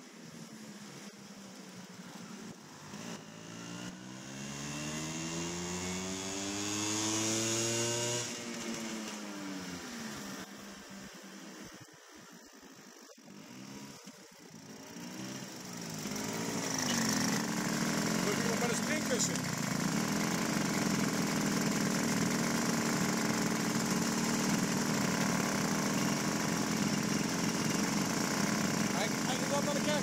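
Small moped engine accelerating, its pitch rising for several seconds, then falling away as it slows. From about halfway through it idles steadily and louder while stopped.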